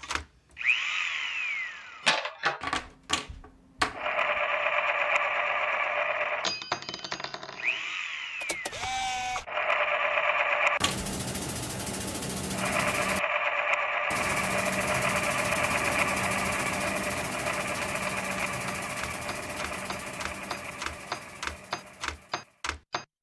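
Sound-effects collage of scattered clicks, two falling whistles and a long band of static hiss that spreads wider about halfway through and fades near the end.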